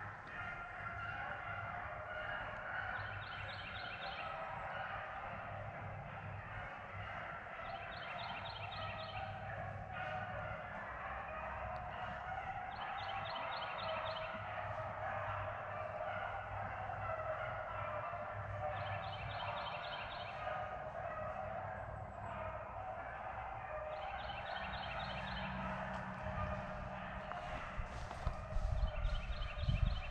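A pack of beagles baying in the distance while running a rabbit: a continuous chorus of overlapping voices. A short high trill repeats about every five seconds, and close rustling and thumps build near the end.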